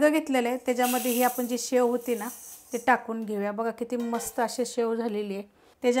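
A woman talking steadily, with a brief hiss about a second in.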